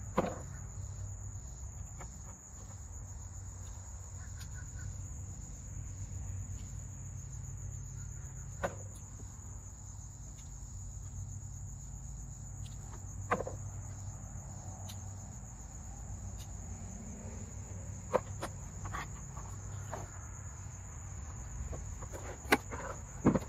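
Steady high-pitched insect chorus, a continuous cricket-like trill, with a handful of sharp clicks and snaps as peppers are cut and picked.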